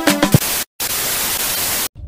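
The end of an Afrobeat intro jingle, cut off about half a second in, then a steady burst of TV-style static hiss lasting about a second that stops abruptly.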